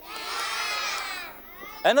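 A group of children shouting back together in answer to a question, a chorus of many young voices lasting about a second and a half before it fades.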